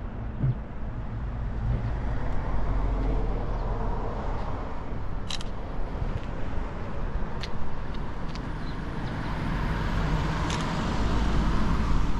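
Outdoor street ambience: a steady low rumble of road traffic, with a few short faint ticks.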